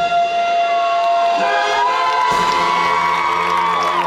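Marching band music with a held brass note that fades out, while the crowd cheers and whoops over it. A deeper sound from the band comes in about halfway through.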